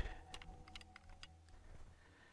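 Faint, scattered small clicks and crackles, mostly in the first second and a half.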